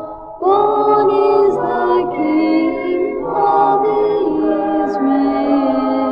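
Vocal choir singing a slow Christmas carol in held chords, with no clear instruments. After a brief break at the start, a new chord comes in about half a second in, and the last held chord begins to fade near the end.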